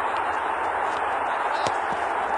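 Steady background hiss of outdoor field ambience, with two faint short knocks near the end.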